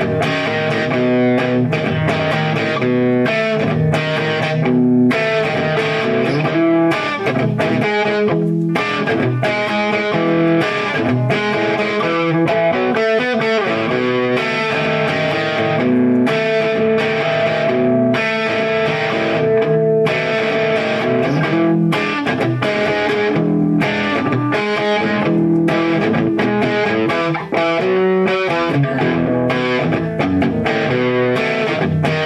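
Gibson SG Standard electric guitar played through an amplifier: a continuous passage of notes, some held for a second or more.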